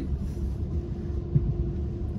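BMW S55 twin-turbo inline-six idling, a steady low rumble heard from inside the car, with one short knock about halfway through.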